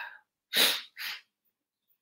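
Two short, noisy breath sounds from a man, the first louder and the second weaker about half a second later.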